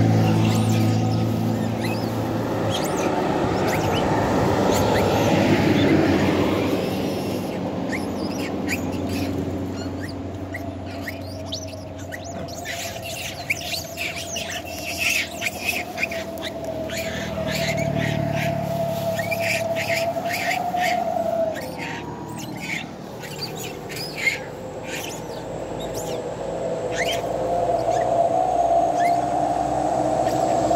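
A troop of long-tailed macaques making many short, high-pitched chirping calls in quick runs through the middle while squabbling over food. Road traffic rumbles past at the start, and another vehicle comes up near the end.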